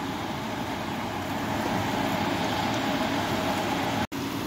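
Steady whooshing noise with a faint constant hum underneath, swelling slightly about halfway through.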